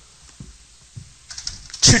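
A few faint, scattered light clicks and taps during a pause, then a man's voice starts speaking loudly near the end.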